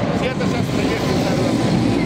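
Steady low engine rumble of vehicles, with faint voices of people talking in the background.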